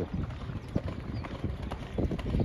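Hoofbeats of a racehorse galloping on a damp sand track: a quick, uneven run of dull thuds as it passes.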